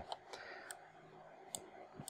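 Two faint, sharp clicks of a computer mouse, under a second apart, over quiet room hiss.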